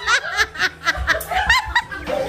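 Several people laughing and giggling in quick, high-pitched bursts, with music playing underneath.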